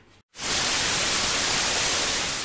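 Television static hiss: a steady white-noise rush that starts suddenly about a third of a second in.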